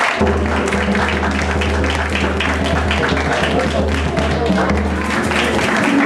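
Hand drums (djembes and congas) played in a drum circle, with dense fast hand strokes, hands clapping along and voices. A steady low hum runs under most of it.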